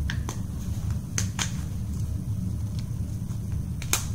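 Plastic blind-basket packaging being handled and opened: a handful of sharp, irregular clicks and snaps over a steady low hum.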